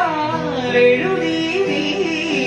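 A man singing a melody with gliding, ornamented notes into a handheld microphone, accompanied by sustained chords on an electronic keyboard.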